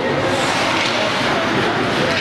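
Steady, noisy wash of an indoor ice hockey rink during play, with no single event standing out.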